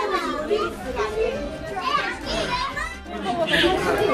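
Children's voices, excited talk and calls overlapping with adult chatter in a room, with no pause.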